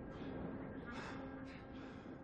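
Heavy, breathy panting with sharp inhales about every half second to a second, over a held low note of film score.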